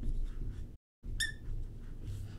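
Marker pen writing on a glass board: faint scratchy strokes over a low room hum, a brief high squeak about a second in. The sound cuts out completely for a moment just before the squeak.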